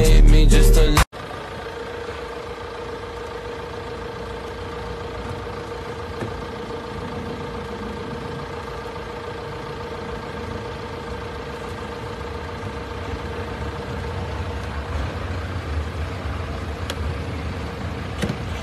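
Loud music stops abruptly about a second in. A steady hum with a constant tone follows, from a car's engine idling, and grows slightly louder near the end.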